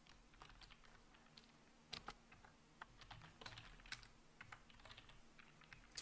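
Faint, irregular keystrokes of typing on a computer keyboard.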